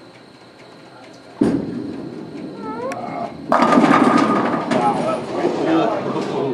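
A bowling ball is released onto the wooden lane with a sudden thud about a second and a half in, rolls down the lane, and hits the pins with a loud crash about two seconds later. Spectators shout and yell while the ball rolls and again after the pins fall.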